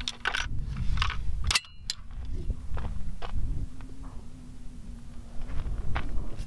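A JP SCR-11 AR-style rifle being handled: a series of sharp metallic clicks and clanks, most in the first half, with wind rumbling on the microphone.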